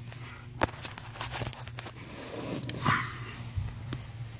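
Handling noise: scattered light clicks and rustles from hands and a handheld camera moving around wiring and plastic trim under a car's dashboard, the loudest rustle just before three seconds in, over a steady low hum.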